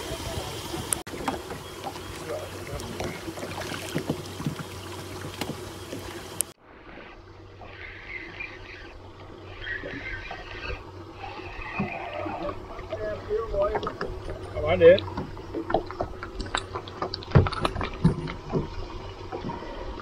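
Handling noise in a small wooden boat while a fish is reeled in on a spinning reel: scattered knocks and taps, busier in the second half, over a steady wash of water and wind, with voices in the background.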